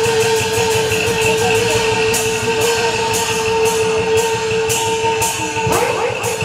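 Taiwanese opera accompaniment: a single long held instrumental note over percussion strikes about twice a second; the held note breaks off near the end.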